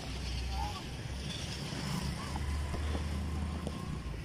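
Wind rumbling on a phone microphone in the open, with faint, distant voices of players.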